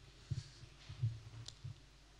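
A few soft, low thumps and one faint sharp click during a pause in speech, typical of handling noise on a handheld microphone.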